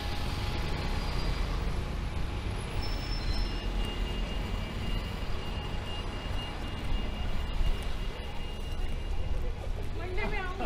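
Road traffic on a town high street: passing cars and a motorcycle over a steady low rumble, with a faint high whine in the middle.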